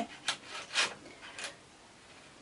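A plastic needle-setting tool drawn against the metal needle butts of a double-bed knitting machine, giving three faint clicks and scrapes about half a second apart as it pushes the needles into position.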